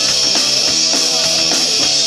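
Rock band playing live: electric guitar and drum kit in an instrumental passage, without vocals.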